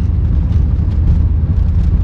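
Steady low rumble of a car driving along, heard from inside the cabin: engine and road noise without change.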